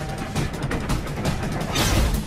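Film soundtrack mix of music over the rumble and clatter of a moving train, with a rush of noise near the end.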